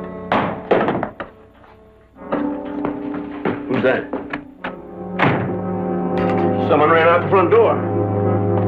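Orchestral film score holding low sustained chords, with a few sharp knocks in the first second and a scatter of knocks and clatter from about two to five seconds in.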